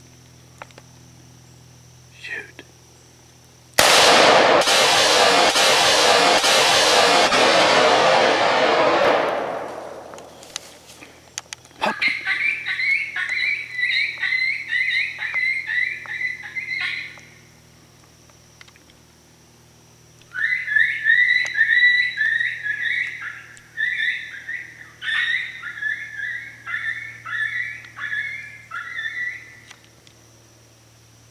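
High, rapid coyote-style yips and short howls in two runs, one about five seconds long and a longer one of about nine seconds, with a pause between them. They come after a loud rushing noise that lasts about six seconds and is the loudest thing heard.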